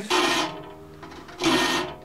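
Three-corner (triangular) file strokes across the steel teeth of a hand saw, two rasping strokes about a second and a half apart. The file is sharpening every other tooth, cutting the back of one tooth and the front of the next.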